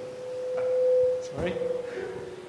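Microphone feedback: a single steady ringing tone that swells to its loudest about a second in, then fades away.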